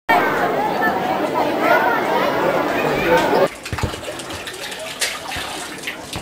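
Many children's voices chattering together. About three and a half seconds in, this cuts off suddenly to a quieter stretch of a water tap running.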